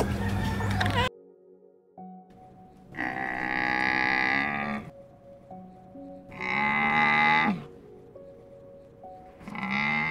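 A camel calling: three long, moaning calls about three seconds apart, each falling in pitch at the end, over soft background music. A different loud sound cuts off about a second in.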